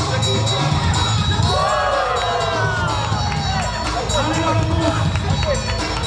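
Music with a steady bass beat playing throughout, with a crowd shouting and cheering over it; the voices swell together in a rising and falling cry about two seconds in.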